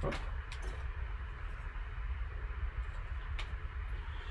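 Faint rustling of a foil card-pack wrapper being handled, with a few light clicks, over a steady low hum.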